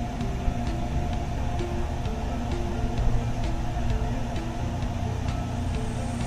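A steady low rumble. Over it runs a soft background melody of single held notes, with light scraping ticks from a spoon stirring thick gram-flour batter in an aluminium pot.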